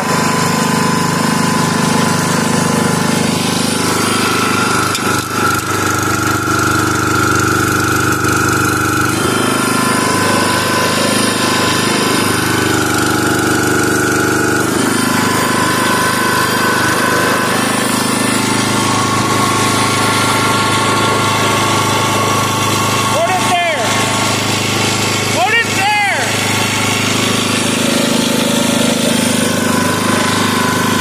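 Log splitter's engine running steadily, its pitch shifting down and up a few times as the splitter is worked on a small branch.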